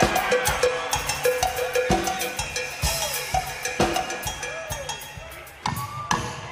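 Live drums and percussion played without other instruments prominent: a fast run of struck hits with a repeated ringing, pitched strike among them. The playing thins out and gets quieter near the end, then a loud hit lands just before the close.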